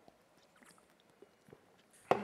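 Near silence: faint room tone with a few small, faint clicks.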